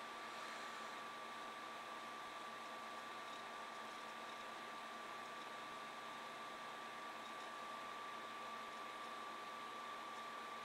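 Faint steady hiss of room tone with a thin, constant high-pitched tone running under it; no distinct events.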